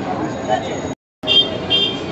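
Busy street background with chatter and traffic. About halfway the sound cuts out completely for a moment, and after it a vehicle horn gives two short, high toots.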